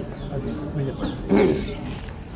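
Men's voices in a crowd, with one louder, rough call about a second and a half in.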